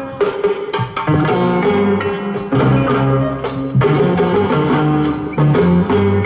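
Live band playing instrumental dance music, with drums and percussion keeping a steady beat under held bass and guitar notes.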